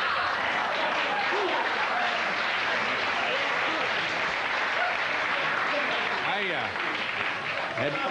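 Studio audience applauding and laughing, a dense steady clatter of clapping with voices mixed in, easing slightly near the end.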